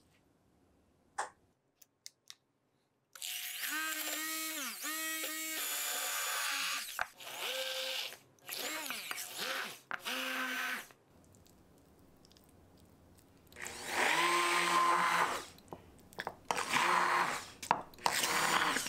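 Handheld immersion blender pureeing cooked kabocha squash in a small glass bowl. It runs in bursts of a few seconds, starting about three seconds in, with its motor pitch dipping and rising as it works through the mash. There is a pause of a couple of seconds in the middle before it runs again.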